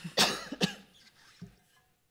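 A woman coughing, turned away from the microphone: two sharp coughs within the first second, then a fainter third about a second and a half in.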